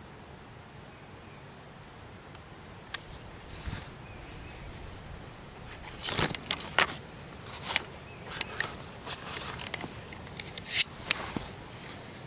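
Small plastic electronics and cables being handled: a lone click about three seconds in, then a run of clicks and rattles from about six seconds in as USB plugs are pulled and an 18650 cell is taken out of a plastic battery charger and set down.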